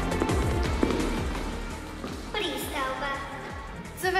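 Background music growing quieter, with a voice starting to speak a little past halfway.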